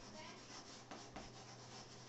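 Chalk writing on a greenboard: faint scratching with a few short strokes as a word is written.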